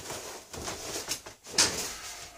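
Fabric rustling and handling noise as a rubber-topped cloth cover is carried and moved, with one short louder burst of noise about a second and a half in.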